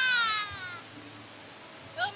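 A single loud, high-pitched squeal that slides down in pitch and fades within the first second, followed by quiet background.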